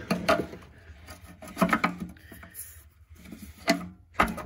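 Metal clicks and knocks of a 10-inch adjustable wrench being fitted to and worked on a truck's oil pan drain plug. Sharp knocks come in clusters just after the start, about a second and a half in and near the end.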